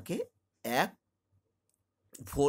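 Speech: a voice says two short words in the first second, then a pause with only a faint low hum.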